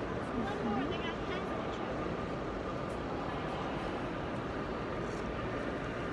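Steady background hubbub of a crowded station hall, with faint distant voices in the first second or so.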